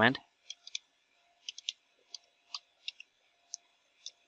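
Computer keyboard keystrokes, about ten single clicks at an unhurried, uneven pace as a short command is typed.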